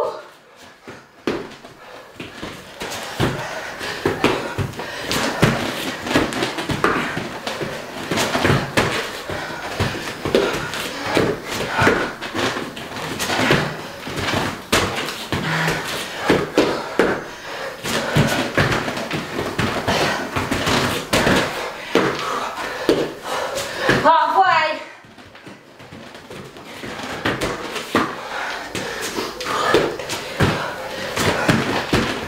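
Feet and hands thudding on rubber gym floor tiles in a quick, irregular patter as two people do mountain climber burpees with jumps, in a small, echoing room. Breathing and effort sounds run under it, with a short vocal sound and a brief lull about 24 seconds in.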